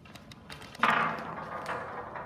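A ball set loose on a ramp of two wooden rails: a few light clicks, then a sudden loud rolling rumble just under a second in that fades away over the next second.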